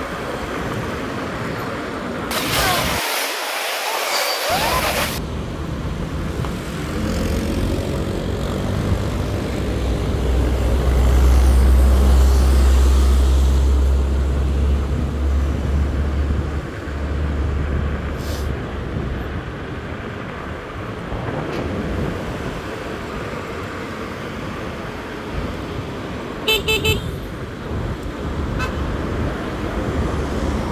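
Road and wind noise while riding an electric scooter in heavy city traffic, with a deep rumble that swells in the middle. Near the end a vehicle horn gives a quick run of short toots.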